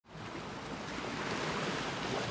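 Steady rushing noise of waves, fading in quickly at the start.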